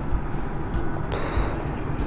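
Railway station background noise: a steady low rumble, with a short hiss a little after a second in.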